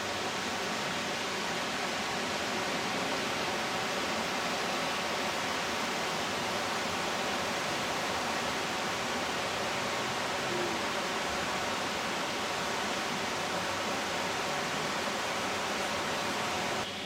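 River Dee rushing over rocky rapids: a steady, even rush of water.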